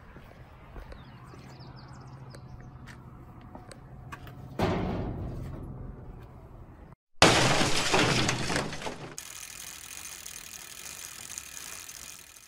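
Logo-intro sound effect: a sudden crash like breaking glass about seven seconds in, dying away over two seconds into a steady shimmering hiss. A quieter sudden crash comes about four and a half seconds in, after faint outdoor ambience with a low hum.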